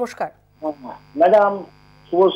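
Short bits of speech over a telephone line with a steady electrical hum and buzz beneath them; a thin high whine comes in about a second in.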